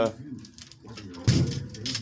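Light clicks and rattles of a plastic fuel pump assembly being handled and set into a fuel tank opening, with one louder knock a little past a second in.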